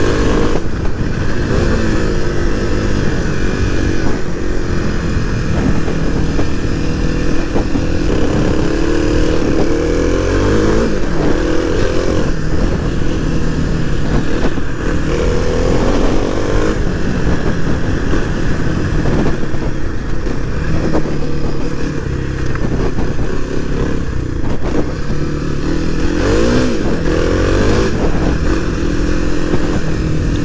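Kawasaki KLX300's single-cylinder four-stroke engine running under way, its pitch rising and falling again and again as the rider accelerates, shifts gears and eases off.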